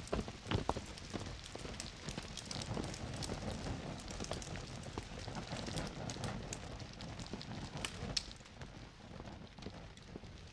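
Open fires crackling, with a steady rushing and frequent scattered sharp snaps and pops.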